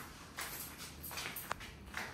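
A few soft footsteps of sandals on a tiled floor, with one sharp click about one and a half seconds in.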